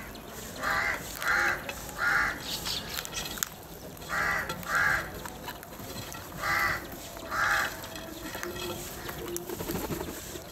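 House crows cawing while feeding at a bowl of grain: seven short caws in three groups, three close together near the start, then two about four seconds in, then two more a couple of seconds later.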